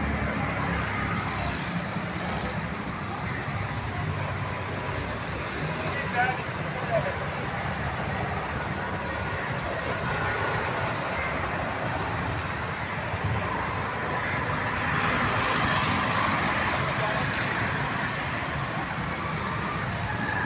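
Steady background noise of road traffic, with voices mixed in and a short laugh about six seconds in.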